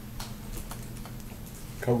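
Scattered clicks of typing on a computer keyboard, a few keystrokes spread irregularly through the pause, over a low steady hum.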